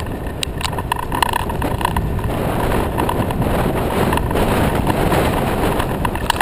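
Rattle and road rumble of a bike-share bicycle being ridden over city pavement, picked up close by a handlebar-mounted camera, with frequent small clicks from the bike and mount over bumps. The noise grows a little louder about two seconds in.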